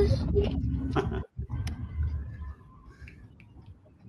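Low rumbling handling noise on a phone recording as the phone is moved about inside a vehicle, with a voice trailing off at the start. The rumble breaks off briefly after about a second and fades out after about two and a half seconds.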